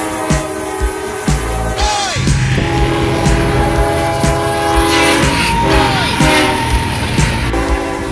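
Background music with a steady thumping beat, held chords and a couple of quick downward-sliding notes.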